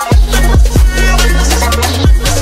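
Electronic background music with a fast drum beat and deep bass; a bass note slides upward near the end.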